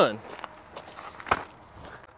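Footsteps: a few soft, irregular steps, the sharpest just over a second in.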